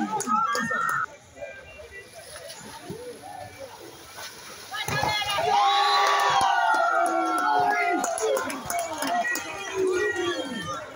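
Players and spectators shouting and cheering over a biribol point. After a few seconds of low murmur, the cheering rises sharply about five seconds in, holds for about three seconds, then eases.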